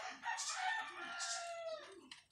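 One long animal call, nearly two seconds, sliding slowly down in pitch, with light rustling and scratching over it.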